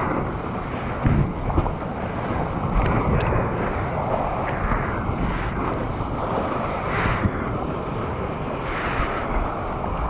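Water rushing and splashing around a surfboard as a surfer paddles, picked up by a GoPro held in the surfer's mouth, with wind on the microphone. A few louder splashes from the arm strokes stand out, about a second in, near three seconds and around seven seconds.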